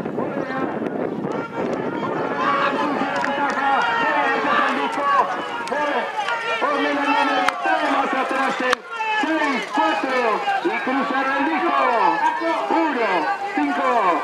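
Loud voices calling out and shouting over one another as trotters come down the home stretch, with two sharp clicks near the middle.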